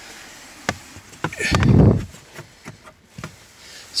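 Handling noise against a car's plastic interior trim: scattered light clicks and taps, with a louder rustling bump about one and a half seconds in.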